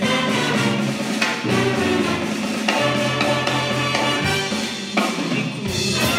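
Live big band playing, with the horn section and drum kit.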